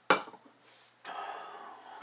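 A stemmed beer glass set down on a tabletop with a sharp clink. About a second later, beer is poured from a tall can into the glass in a steady stream.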